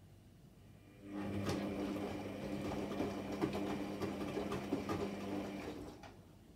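Electra Microelectronic 900 front-loading washing machine turning its drum on the synthetics 40° wash. The drum motor starts about a second in and runs with a steady hum for about five seconds, with the laundry tumbling and clicking in the drum, then stops.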